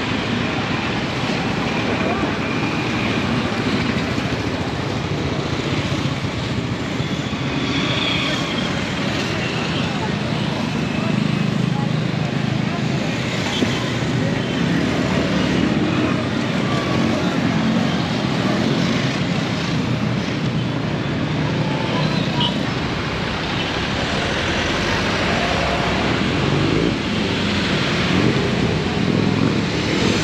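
Street ambience: steady road traffic of motorcycles, cars and buses, with people's voices in the background.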